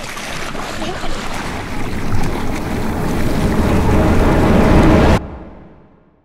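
Sea water splashing and churning as a person thrashes in the waves. It grows louder and cuts off abruptly about five seconds in.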